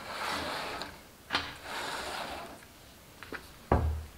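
Cardstock papercraft wheel being slid and turned across a cutting mat: two stretches of dry scraping and rustling with a sharp click between them, then a few light clicks and a loud knock near the end.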